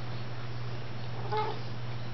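Domestic cat giving one short meow about one and a half seconds in, over a steady low hum.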